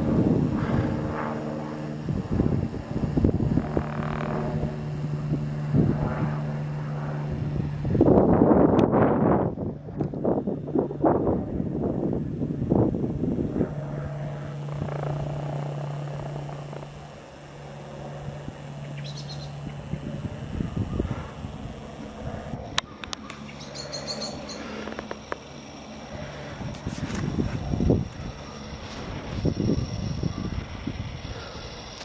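Aircraft engine droning overhead with a steady low note that fades away after about twenty seconds, under gusts of wind buffeting the microphone.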